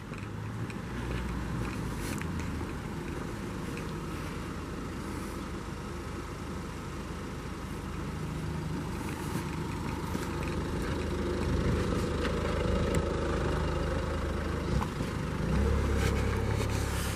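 City street ambience: a steady wash of traffic noise with a low rumble, slowly getting louder toward the end.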